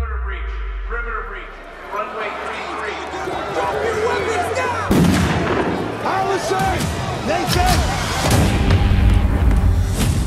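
Disaster-film trailer soundtrack: many voices shouting over a deep rumble and music, with a sudden loud bang about five seconds in.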